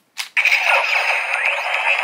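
A short click, then the Dino Knight Morpher toy's small speaker plays a loud electronic sound effect, set off by the key going into the morpher. It is thin, with no bass.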